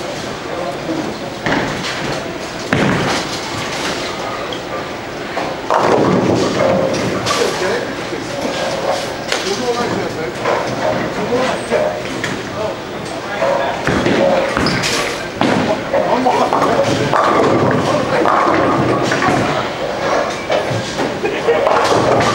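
Bowling alley din: steady background chatter of many voices, broken by several sharp crashes and thuds of balls and pins on the lanes.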